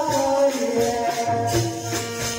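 Devotional bhajan music: held melodic notes that step from pitch to pitch, over a steady jingling hand percussion keeping time.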